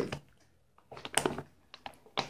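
Foil-lined potato chip bag crinkling briefly in the hands, a short cluster of rustles about a second in and a couple of faint ticks near the end.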